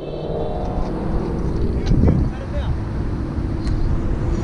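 Steady rumble of road traffic and car engines, with voices in the background.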